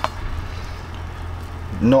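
A steady low hum under faint, even background noise, with no distinct knocks or clicks; a man's voice comes in near the end.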